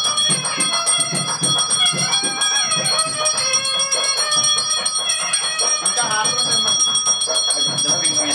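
Devotional music for a Hindu aarti (harathi): a wavering melody over a regular drum beat, with a bell ringing continuously.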